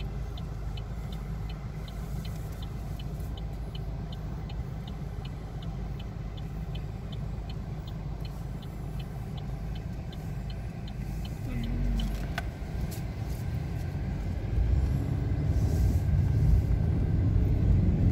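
A car's turn-signal indicator ticking evenly, about three clicks a second, over the low rumble of the idling car heard from inside the cabin; the clicking stops about eleven seconds in, and the engine and road noise grow louder near the end as the car pulls away.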